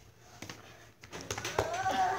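Soft scuffling and a few light knocks as children wrestle on a carpeted floor, then, from about a second in, a child's wordless voice.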